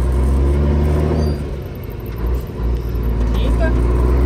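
Heavy truck diesel engine heard from inside the cab, pulling steadily. About a second and a half in, the engine note drops away for about a second, as in a gear change, then picks up again.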